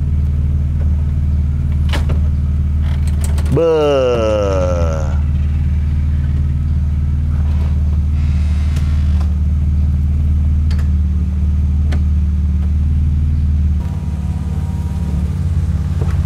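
A modified BMW E36 325i straight-six idling steadily through a Supersprint exhaust, with a few light clicks from the convertible soft top being folded back by hand. The idle note dips slightly about fourteen seconds in.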